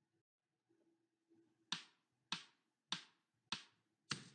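Four evenly spaced metronome count-in clicks, about 0.6 s apart, from the Yousician piano app, counting one bar of 4/4 before the exercise starts.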